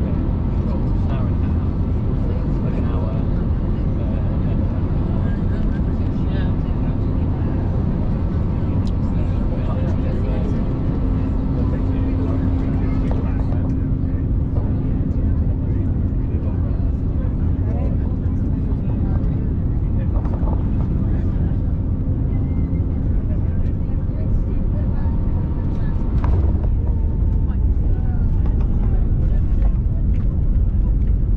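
Cabin noise of an Airbus A320neo with CFM LEAP-1A engines landing: a steady engine and airflow rumble with a held hum through the middle. Near the end there is a knock, and the rumble grows louder as the airliner rolls on the runway.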